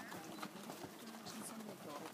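Soft, dull hoofbeats of a ridden horse moving over a sand arena, under low conversation.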